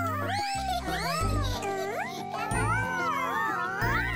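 Bouncy children's cartoon music with a steady bass line. Over it come wordless, squeaky cartoon-character voice sounds that slide up and down in pitch, and one long rising glide near the end.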